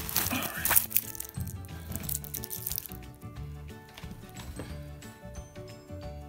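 Paper and plastic packaging crinkling and rustling for about the first three seconds as a wristwatch is lifted out of its box, over steady background music.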